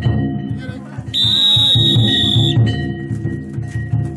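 Danjiri float's festival drum and gongs playing a steady beat as the float is hauled along. About a second in, a long shrill whistle blast sounds over it and lasts about a second and a half.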